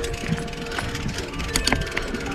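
Yeti SB95 mountain bike's rear freehub buzzing with fast ratchet clicks as it coasts over dirt singletrack, with tyre and trail noise. A couple of sharp rattles from the bike come late on.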